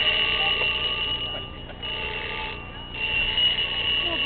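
Alarm clock sounding a steady high electronic tone that cuts out briefly twice.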